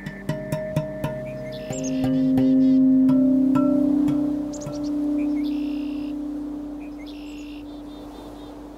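Ambient electronic music with no singing. Sparse clicks in the first couple of seconds, then a low sustained drone swells up about two seconds in and slowly fades. Short high chirping sounds come in above it a few times.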